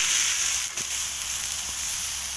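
Ribeye steak sizzling on a hot grill as it is flipped: a steady high hiss, with a faint tap about three-quarters of a second in.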